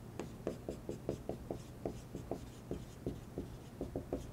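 Dry-erase marker writing a word on a whiteboard: a quick run of short strokes, about five a second.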